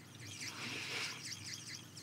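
Handheld FOREO eye massager running with a faint, high-pitched pulsing buzz from its tapping head. It keeps going because it won't switch off.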